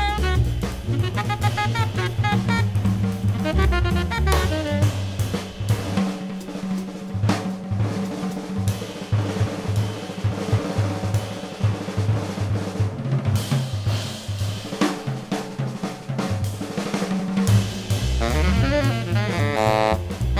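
Jazz trio with the drum kit to the fore, playing busy snare, hi-hat, cymbal and bass-drum figures over a moving double-bass line. A saxophone plays in the first few seconds, drops out, and comes back in near the end.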